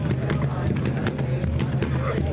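Hawaiian dance chant: voices chanting over sharp percussive beats at a steady pace.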